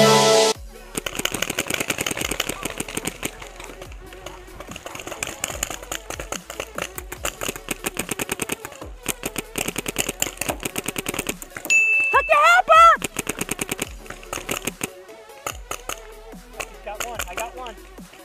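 Paintball markers firing in rapid strings of sharp pops, many shots close together across the field. A short shout cuts through about twelve seconds in.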